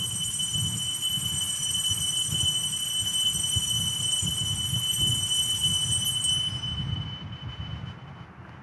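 Consecration bells rung at the elevation of the host: a sustained high ringing bell tone with several overtones above it, fading out near the end.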